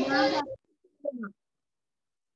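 Speech over a video call that stops about half a second in, followed by a brief short vocal sound about a second in, then dead silence as the call audio cuts out.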